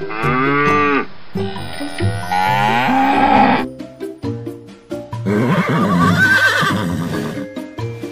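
A cow mooing twice, each call bending up then down in pitch, then a longer, wavering animal call in the second half. Light background music with plinking mallet-percussion notes plays throughout.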